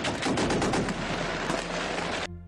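Rapid gunfire with many shots a second, like machine-gun fire, going on steadily.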